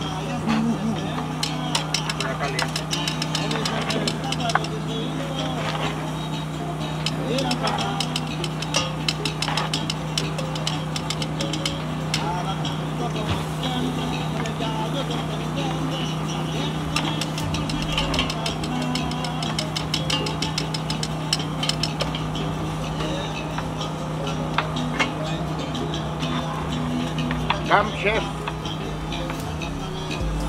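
Background talk and scattered metal clinks of tongs and knives turning and cutting meat on a propane camp grill, over a steady low hum.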